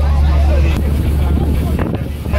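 Passenger ferry underway: a loud, steady low rumble that breaks up briefly near the end, under the chatter of passengers on board.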